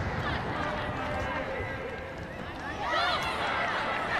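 Pitch-side sound at a rugby lineout: women players shouting calls about three seconds in, over steady crowd and stadium ambience.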